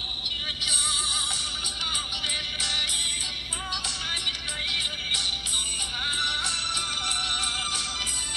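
Background music: a song with a singing voice over light percussion.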